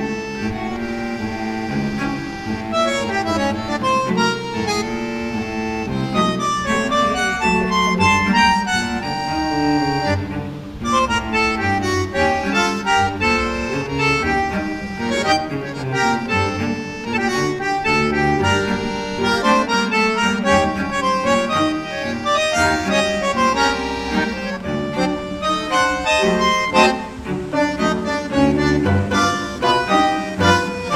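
Instrumental background music: a melody of shifting notes over a steady accompaniment.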